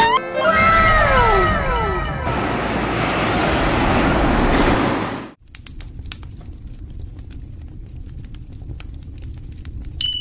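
Heavy cement tanker truck passing close by, with engine rumble and road noise, overlaid in the first two seconds by several falling whistle-like tones. The sound cuts off abruptly about five seconds in, followed by a quieter stretch with faint scattered ticks.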